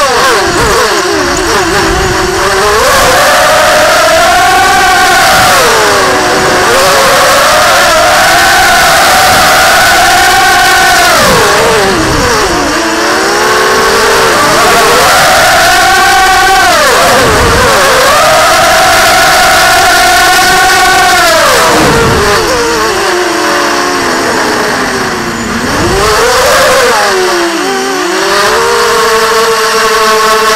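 ZMR 250 racing quadcopter's four brushless motors and propellers whining loudly, heard up close from the onboard camera. The pitch swings up and down again and again with the throttle, with several sharp dips, and settles to a steadier tone near the end.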